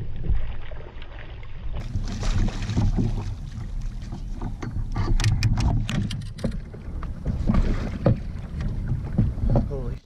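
Water splashing and sharp knocks and clatter against a fishing kayak as a hooked fish is gaffed alongside, the knocks bunched about five to six and a half seconds in. Wind rumbles steadily on the microphone.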